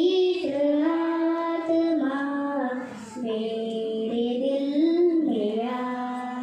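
A young girl singing a Hindi devotional song solo into a handheld microphone, holding long notes, with a short breath about three seconds in.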